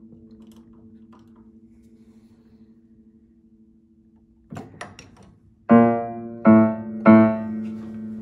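Upright piano: a note's strings ringing and slowly fading, a few light clicks from the action, then the same note struck three times, each left ringing. The repeated note is a check that its damper now lifts evenly with the pedal after the damper wire has been bent.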